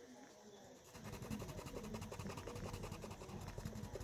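Wax crayon scribbling on paper, colouring in a small square with rapid back-and-forth strokes that start about a second in.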